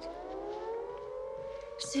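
Air-raid warning siren wailing, several tones together gliding up in pitch over the first second and a half, then holding steady: the alert of an incoming air raid.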